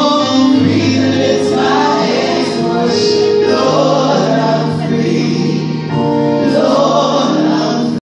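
A small gospel vocal group, several women and a man, singing in harmony into microphones, holding long sustained notes.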